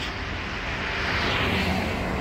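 Road traffic noise: a vehicle passing, its tyre and engine sound swelling to a peak past the middle and easing off.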